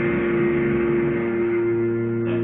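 A chord on a Squier electric guitar left ringing, held steady without new strokes: the song's closing chord.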